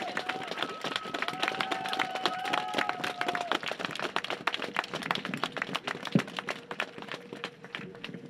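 Small outdoor crowd clapping in applause, the claps thinning and dying away over the last few seconds. A drawn-out voice calls out over the clapping in the first three seconds.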